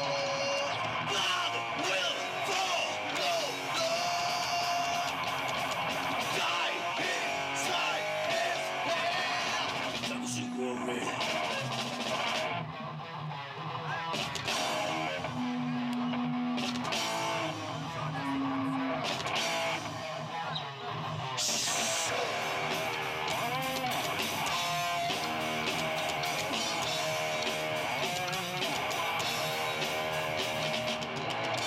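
Live rock band playing through amplifiers and PA speakers: electric guitars over a drum kit. The music thins out briefly twice in the middle before the full band comes back.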